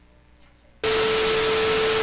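Quiet room tone, then, a little under a second in, an abrupt burst of loud TV static sound effect: an even hiss with a steady tone running through it.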